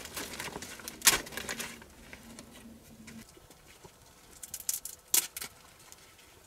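Dry twigs and brushwood snapping and rustling as they are pushed into a small fire, with a loud crack about a second in. A few more sharp cracks come close together near the end.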